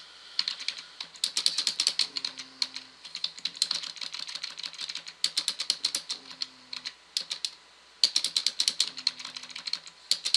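Computer keyboard typing in quick runs of keystrokes, with a pause of about a second near the end.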